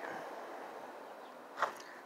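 Faint outdoor background hiss that slowly fades, with one light click about one and a half seconds in; no engine is heard running.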